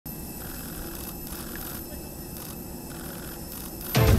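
Ambient sound at an aircraft door: a steady low rumble with faint, indistinct voices.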